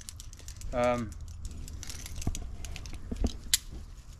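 Climbing hardware on a harness clicking and rattling as it is handled: light scattered clicks with a couple of sharper ones near the end.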